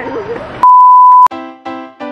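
A loud, pure electronic bleep at a single steady pitch, about half a second long and cut off sharply, of the kind dubbed in to censor a word. Right after it, background music starts with a few struck keyboard notes.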